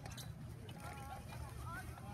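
Faint voices speaking over a steady low rumble.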